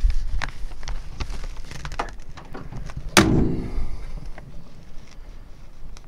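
Wind buffeting the microphone as a low rumble, with scattered light clicks and one sharp knock about three seconds in that rings briefly.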